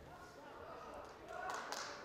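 Faint, distant voices of people shouting and talking around a fight cage, with a couple of light taps about one and a half seconds in.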